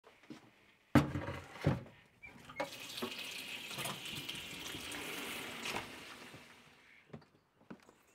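Two sharp knocks, then a kitchen mixer tap running into a plastic bucket held in a stainless steel sink, filling it. The water runs steadily for about four seconds and tapers off near the end.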